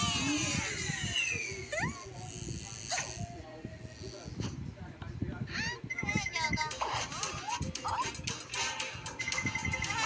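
Cartoon soundtrack played from a TV: music with animated character voices and sound effects, including gliding squeaky vocal sounds and short electronic beeping tones.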